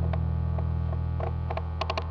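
Steady low mains hum from amplified band equipment left on after the playing stops, with a handful of short clicks scattered through it, coming closer together near the end.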